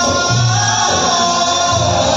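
A live band with a singer, amplified through large concert speakers and recorded from the crowd: sustained sung notes over keyboard, guitar and a low bass line.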